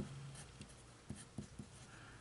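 Faint scratching of a wooden pencil writing a word on a sheet of paper, with a few light ticks as the lead touches the page.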